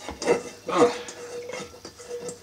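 A man's voice: a short "Ah", followed by a faint steady hum held for about a second.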